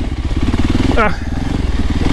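VOGE 300 Rally's single-cylinder engine running steadily as the motorcycle is ridden along a rocky dirt trail.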